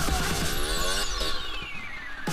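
Electronic dance music breaking down: the beat stops and a falling pitch sweep glides down across the whole mix over about a second and a half, a transition into the next track.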